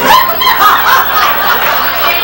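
People laughing loudly, in short, choppy bursts, starting just as the singing breaks off.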